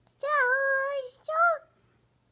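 A toddler's high-pitched, sing-song vocalizing: one held note lasting most of a second, then a shorter one.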